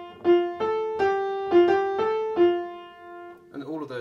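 Upright piano played with the right hand: a short single-note melody phrase of about seven notes, the last one left to ring and fade. A man starts speaking near the end.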